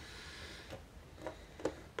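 A few faint, short clicks from small metal padlock parts being handled and fitted as the face plate goes back on, over a low hiss.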